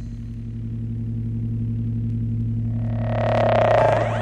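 Electronic drone music: steady sustained low tones, joined near the end by a swelling mid-pitched tone that grows louder and then breaks off.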